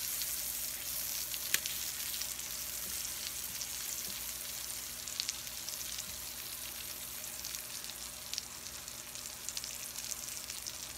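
Salmon fillet, sliced onions and asparagus sizzling on a hot griddle: a steady frying hiss with small crackles and a few sharp clicks, the loudest about one and a half seconds in.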